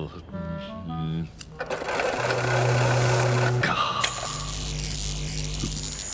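Cartoon sound effect of a hand-cranked static electricity generator being worked: a dense, noisy whirring buzz over a low tone, settling into a steady low electric hum about four seconds in. A few short musical or vocal notes come in the first second.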